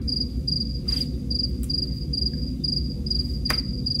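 Insect chirping steadily, a short high chirp repeated about three times a second, over a steady low hum. A few faint clicks, the sharpest about three and a half seconds in.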